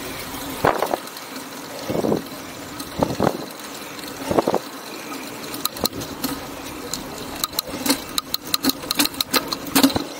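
Riding noise from a bicycle, picked up by a camera on the handlebars: a steady hum with a few brief swells in the first half, then a run of sharp, irregular clicks and rattles through the second half.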